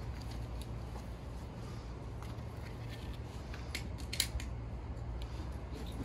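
Seatbelt webbing of a child restraint being threaded around a gurney frame and cinched, with a few sharp clicks of the strap hardware about four seconds in, over a steady low hum.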